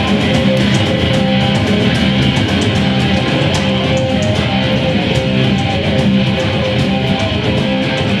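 A rock band playing live: electric guitar and bass over drums, steady and loud, with regular cymbal strikes.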